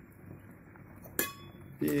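A single sharp clink about a second in: a metal spoon knocking against an enamelled steel soup pot, with a brief faint ring after it.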